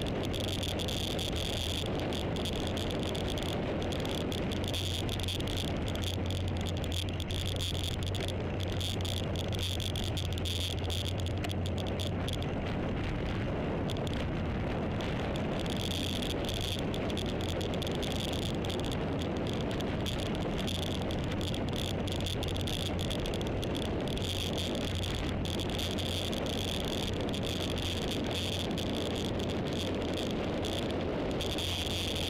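Steady low drone of a moving road vehicle, with an insect chorus shrilling in a high steady band over it; the insects fade for a few seconds near the middle and come back.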